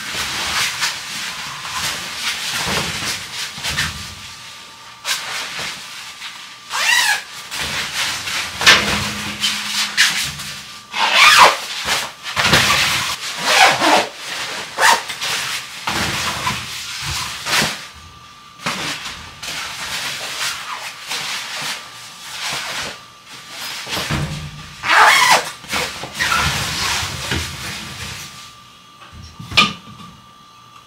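Fabric cushion covers rustling as they are handled, zipped shut in a few quick pulls, and pushed into a top-loading washing machine.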